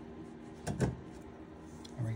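A windshield wiper blade's pin-type adapter sliding off the pin of the wiper arm: a brief double click-scrape of plastic and metal about three-quarters of a second in.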